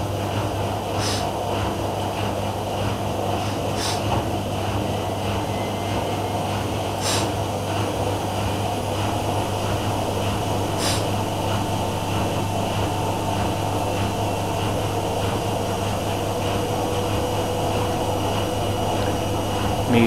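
Two front-loading washing machines in their final spin, a Miele W5748 spinning up for its final burst and a Whirlpool AWM 1400 spinning at low speed, giving a steady hum and whir. A few faint high clicks come through it.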